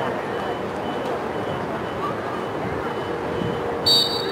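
A referee's whistle gives one short, loud, shrill blast near the end, over a steady outdoor background of voices. Under it, a vehicle's reversing alarm beeps faintly about twice a second.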